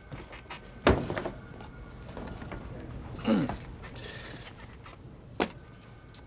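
Handling of an acoustic ceiling tile as it is knocked loose and broken: a sharp knock about a second in, a scraping sound around three seconds, and a short snap near the end.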